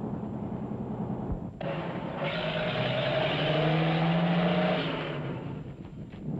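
Aircraft engine starting up. A low hum gives way, about a second and a half in, to a louder rush of engine noise whose tones climb slowly in pitch, then it fades out near the end.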